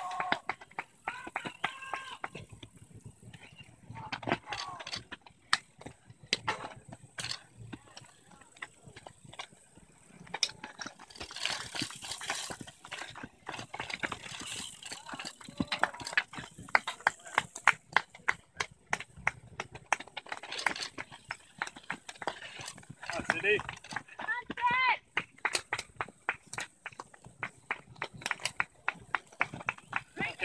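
Cyclocross racers running up dirt log steps with their bikes: repeated clicks and knocks of shoes and bike frames, with spectators' voices and a shout of encouragement a few seconds before the end.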